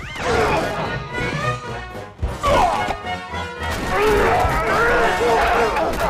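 Orchestral cartoon score with shouting voices over it, and a loud crash of a football tackle about two seconds in.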